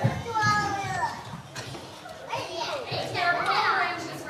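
Young children's high voices calling out and chattering, with one falling call near the start and a rising one about three seconds in.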